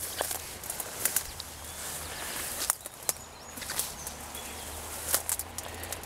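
Footsteps through tall weeds and brush, with the plants rustling and brushing past. Scattered irregular crackles and snaps run through it.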